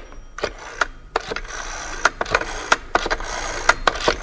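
A telephone being redialed after the other end has hung up: a run of irregular clicks and rattles over a steady hiss.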